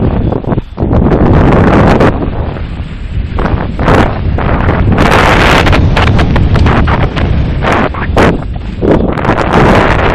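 Mountain bike descending a rough dirt trail at speed: a loud, continuous clatter of knocks and rattles as the wheels run over rocks and roots, mixed with wind buffeting the camera's microphone.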